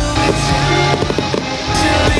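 Fireworks crackling and popping in quick, dense succession over loud rock music.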